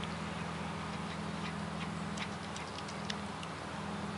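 Hairless cat chewing a catnip leaf: a scatter of small, sharp clicks over about two seconds, over a steady low hum.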